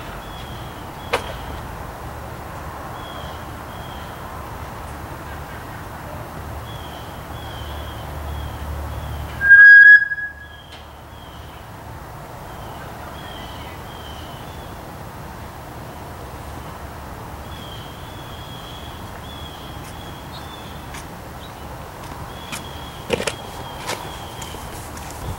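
A bullhorn gives one loud, shrill whistle-like tone lasting about a second, midway through, so loud it distorts. Faint short high chirps repeat in the background, and there is a sharp click near the start and another near the end.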